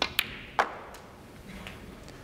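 Snooker cue tip striking the cue ball, followed by sharp clicks of ball on ball. The loudest comes about half a second in, as the pink is potted.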